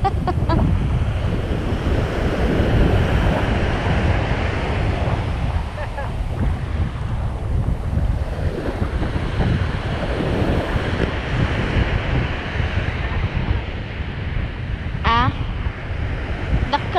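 Ocean surf washing onto a sandy beach, with heavy wind buffeting the microphone as a steady low rumble. A short voice call rises briefly near the end.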